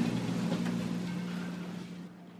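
A phone alarm ringtone is switched off: its repeating high tones stop at once, leaving a steady low tone that fades away over the two seconds.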